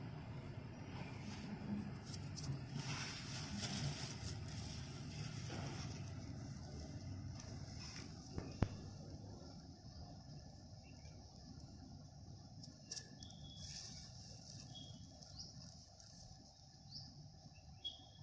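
Bare hands mixing wet cement slurry in a metal basin: faint scraping and squelching, with one sharp knock on the pan about eight and a half seconds in. Faint bird chirps come through in the second half.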